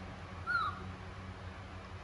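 Baby macaque giving one short, high squeak that falls in pitch, about half a second in, over a steady low hum.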